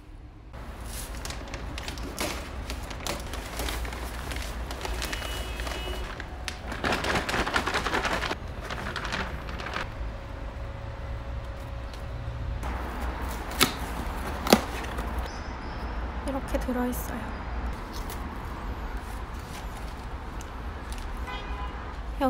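Potting soil being poured into a plastic planter box and spread by a gloved hand: a continuous crumbly rustle with many small clicks and knocks, two sharp ones standing out a little past the middle.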